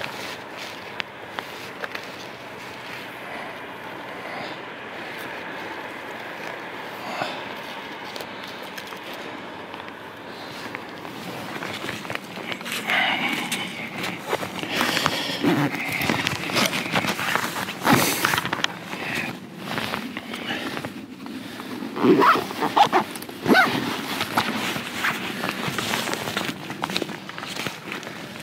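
Footsteps crunching through frost-covered snow and undergrowth, irregular and uneven, starting about twelve seconds in. Before that there is a quieter stretch of faint rustling and handling.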